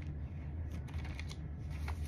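Thin Bible pages rustling as they are leafed through, a few soft page flicks over a steady low hum.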